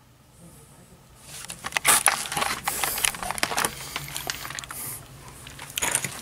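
A quick, irregular run of scrapes and clicks that starts about a second in and continues almost to the end.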